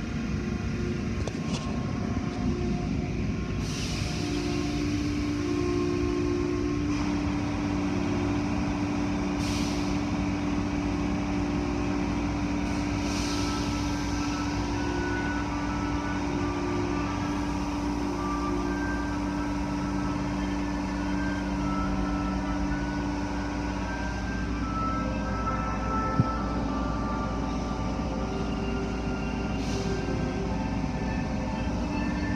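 Automatic car wash machinery running, heard from inside the car: a steady low rumble with water spray and brushes washing over the car, and a few brief hissing surges of spray.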